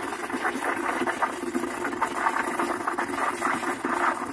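Capresso espresso machine's steam wand frothing milk in a mug: a steady hiss and hum with a rapid, irregular crackle of steam breaking through the milk.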